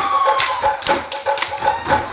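Samoan group-dance percussion: a fast, steady drum beat with sharp, loud hand claps about twice a second.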